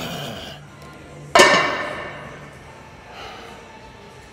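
A gym weight or machine clanking: one sudden loud metallic strike about a second and a half in, ringing away over about a second.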